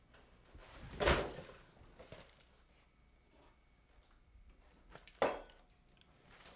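Two thuds of a refrigerator door and kitchen handling: the louder about a second in, a sharp second one just after five seconds, with faint rustling between.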